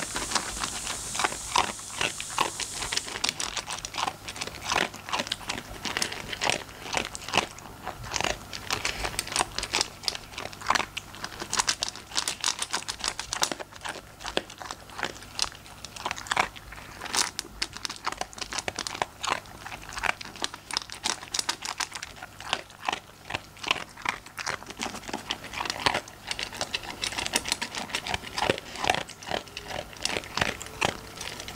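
A Labradoodle eating crunchy food from a stainless steel bowl: rapid, irregular crunching and chewing throughout.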